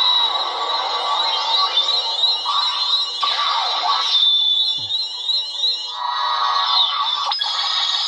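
Xenopixel lightsaber sound board playing its blade sound through the hilt speaker: a loud, continuous electronic hum with sweeping pitch glides while the blade is lit, then a sharp click near the end as the blade shuts off.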